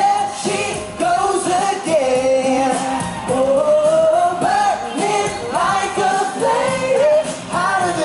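Live pop music: male voices singing long, sliding held notes over backing music.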